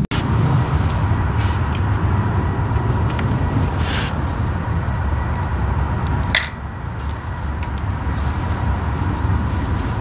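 A steady low rumble with a few short clicks; the rumble drops a little after a click about six seconds in.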